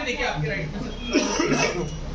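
Overlapping voices of photographers and people around them talking and calling out, with a short harsh burst a little over a second in.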